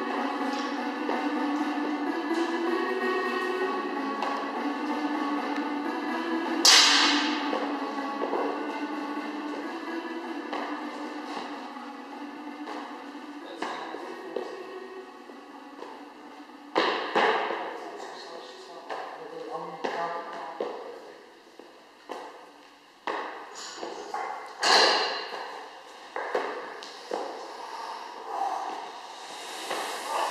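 Background music that grows quieter, under sharp thuds and slaps of a person doing burpees on a gym floor, the loudest landings about 7, 17 and 25 seconds in.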